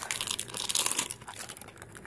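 Paper wrapping being torn and crumpled off a small toy box by hand, a dense crackle that thins out about a second in.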